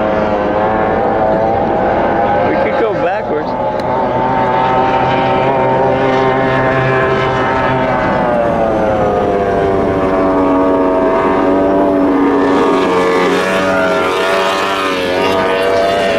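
A motorboat engine running steadily. Its pitch sags about halfway through and climbs again near the end.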